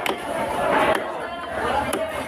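Background voices chattering, with a big knife chopping through black carp onto a wooden cutting block, a strike at the start and another near the end.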